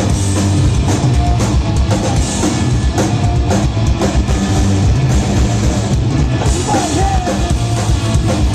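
Punk rock band playing live on an amplified outdoor stage: electric guitars, bass guitar and a drum kit. A singing voice comes in near the end.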